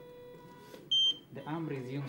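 Prototype ventilator's alarm giving one short, high beep about a second in, part of a repeating alarm. It signals high pressure in the breathing circuit and keeps sounding until a nurse silences it.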